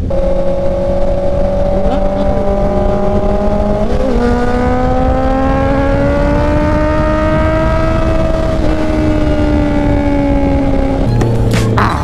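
Honda CB650R inline-four engine running at cruising speed under a steady rush of wind and road noise. Its pitch climbs slowly through the middle, then eases off toward the end.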